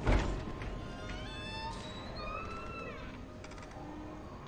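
Suspense film score: a deep hit at the very start, then thin high tones that slide upward and bend down over a low rumble.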